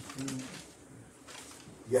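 A man's brief hummed "mm" at a steady low pitch, about half a second long at the start, with a spoken word beginning near the end.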